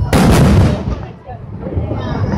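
Aerial fireworks shells bursting: a loud boom just after the start that rumbles away over about a second.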